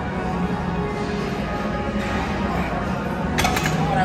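Music playing steadily, with a short clatter of sharp clicks near the end.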